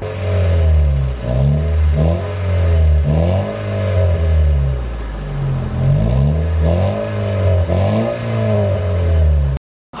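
Honda Fit hybrid's four-cylinder engine revved through a freshly fitted Kakimoto Racing aftermarket muffler. The engine is blipped up and back down several times, settling to a steady idle for a couple of seconds in the middle, with a pretty good exhaust sound. The sound cuts off suddenly near the end.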